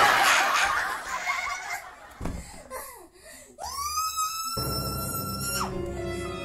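Edited-in comic sound effects: a burst of laughter in the first couple of seconds, then a single held musical note that slides up, holds for about two seconds and drops away near the end.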